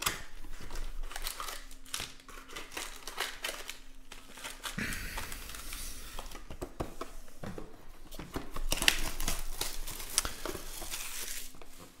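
Plastic wrapping crinkling and tearing in dense, irregular crackles as a sealed box of trading-card packs is unwrapped and opened and its wrapped packs handled, loudest about nine seconds in.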